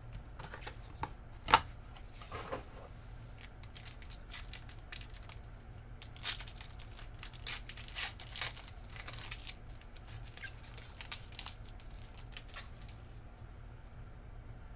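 Foil trading-card pack wrappers being torn open and crinkled by hand, in irregular bursts that are densest in the middle, with one sharp knock about a second and a half in.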